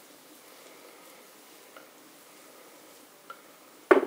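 Faint handling sounds with a few light ticks as blue hair dye is worked into wet hair with gloved hands, then one sharp knock near the end.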